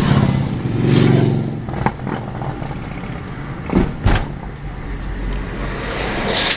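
Touring motorcycle's engine passing close by in the oncoming lane, swelling to its loudest about a second in and then fading. Steady car road noise follows, with a few short knocks.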